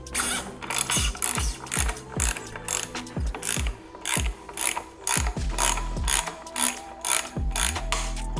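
Ratchet wrench clicking in repeated runs, a few clicks a second, as its handle is swung back and forth on a 24 mm socket to unscrew the bypass plug of a 2JZ oil pump.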